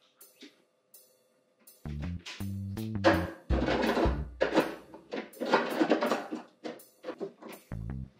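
Background film score: after a few faint knocks, music with a stepping bass line and loud drum hits starts about two seconds in.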